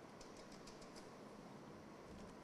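Faint keystrokes on a computer keyboard over quiet room tone: a quick run of light clicks in the first second, then a few more near the end.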